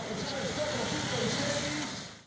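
Large motorcycles running at low revs as they pull away one after another, with people's voices talking over the engines.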